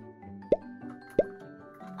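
Two short cartoon "bloop" sound effects, each a quick upward-sliding pop, about half a second in and again just after one second, over light, gentle background music.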